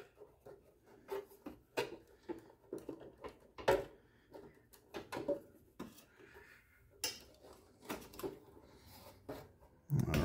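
Irregular clicks, knocks and light scrapes of a full-height Tandon floppy drive being worked loose and slid out of an IBM 5150's drive bay by hand, the drive catching on a jumper pack on the board.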